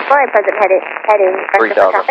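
Speech only: a man talking in a narrow, radio-like voice, reciting a practice ATC call.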